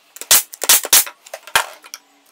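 Pneumatic nail gun firing nails into a wooden frame: three sharp shots in quick succession within the first second, then a fourth, a little softer, about a second and a half in.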